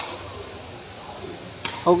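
Sepak takraw ball kicked twice: two sharp knocks, one right at the start and another about a second and a half later.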